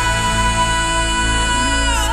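A male pop singer holding one long, high note live over the backing track, the note sliding down near the end.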